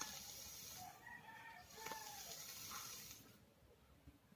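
A person exhaling a large cloud of e-cigarette vapour after a hit on a vape mod: a faint, steady breathy hiss that fades out about three seconds in.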